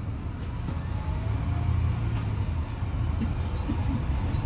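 Cabin noise inside a moving Alexander Dennis Enviro400EV battery-electric double-decker bus: a steady low rumble of running and road noise, growing slightly louder.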